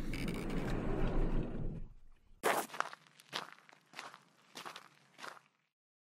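Sound-effect footsteps, about five separate steps, walking up to an abandoned truck. They are preceded by a noisy rush with a low rumble that fades out over the first two seconds.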